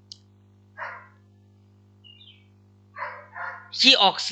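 Steady low electrical hum through a pause in a man's speech, broken by a few short faint noises about a second in and around three seconds. Speech starts again near the end.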